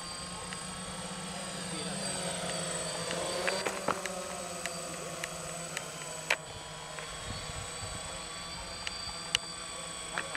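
Quadcopter drone's propellers whining steadily in flight, the pitch wavering as it manoeuvres. Sharp clicks come now and then.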